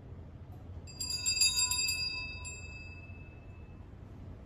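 Sanctus bells (a cluster of small altar bells) shaken in a quick run of strikes about a second in, then ringing on and fading away over the next two seconds. They are rung at the priest's communion during the Mass.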